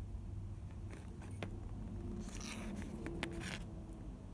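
Light handling noise of a small styrene plastic model part being turned over on a cutting mat: a few faint clicks and two brief scrapes, over a steady low hum.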